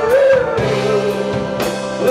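Live Southern rock band playing through a PA: a lead vocal holds a long note that bends in pitch over electric guitars, bass and a drum kit, with regular drum hits.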